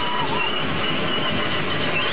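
Dense, steady wash of electronic noise from a live experimental performance, with thin whistling tones wavering and bending above it: a lower one that wobbles and drops out about half a second in, and a higher one that holds on with a slight warble.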